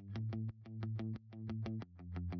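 Background electronic music: a quick run of short plucked synth notes over a steady bass line, swelling and dipping about twice a second.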